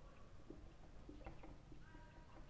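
Near silence: faint room tone with a few brief, faint sounds in the background.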